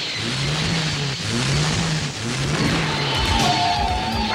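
Cartoon sound effect of a truck engine revving in surges, rising and falling about once a second, as the truck strains but cannot move, held fast by a magnetic beam. A steady higher tone joins in the last second.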